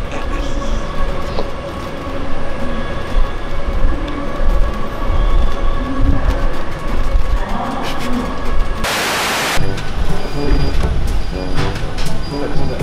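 Passenger rail car in motion: a steady low rumble with a constant whine from the drive. A short burst of hiss about nine seconds in, then music starts.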